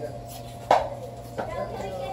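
Indistinct voices over a steady electrical hum in a room, with a short sharp knock-like sound about two-thirds of a second in.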